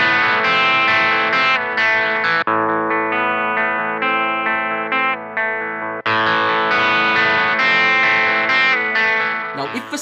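Electric guitar played with distortion through a Blackstar HT Venue Club 40 MKII valve amp, the amp's channels switched from the BOSS GT-1000CORE's CTL1 footswitch. About two and a half seconds in the tone changes to a duller, less bright sound with a brief drop, and at six seconds it switches back to the bright distorted sound.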